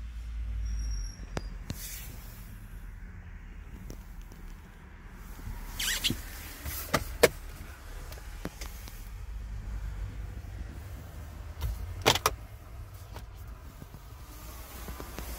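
Low rumble of a phone being handled, then several sharp plastic clicks and knocks, in pairs around the middle and near the end, as dashboard compartment lids are worked in an SUV cabin. The last pair comes as the glovebox latch is opened.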